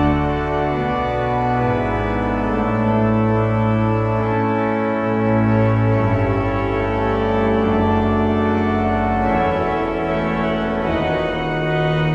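Church pipe organ playing slow, sustained chords over low bass notes that shift every second or two.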